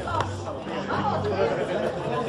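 Several people talking and calling out at once, over a steady low hum, with a couple of sharp knocks right at the start.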